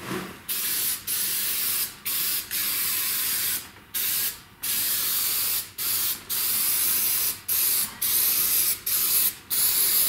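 Aerosol spray paint can spraying a roll cage bar in a run of hissing bursts, each from a fraction of a second to about a second long, with short breaks between.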